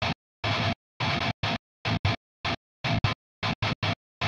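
Heavily distorted electric guitar playing short, staccato palm-muted chugs through a noise gate set extremely tight. About a dozen hits in an uneven stop-start rhythm, each cut off dead into total silence, which gives the unnatural, robotic sound of a very fast gate.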